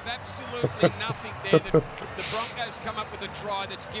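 A rugby league television commentator talking, well below the level of the nearby talk, over a low steady background of crowd noise, with a brief rush of noise a little over two seconds in.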